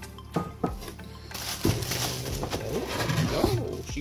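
Clear plastic wrap crinkling and rustling as it is pulled off the packing inside a cardboard wine shipper, after a couple of light knocks from the packing in the first second.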